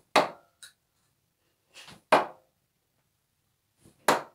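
Steel-tip darts thudding into a wall-mounted dartboard: two sharp single hits about two seconds apart, with a third landing right at the end.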